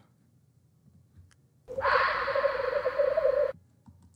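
Owl screech sound effect played back: one harsh scream of about two seconds, with a wavering tone under a hiss, starting a little before the middle and cutting off suddenly.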